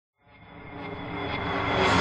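A swell of noise that fades in from silence and grows steadily louder, building into the intro theme music, which hits right at the end.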